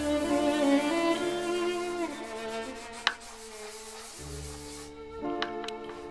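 Background music of bowed strings, violin and cello playing slow held notes. A sharp click sounds about halfway, and two faint ticks near the end.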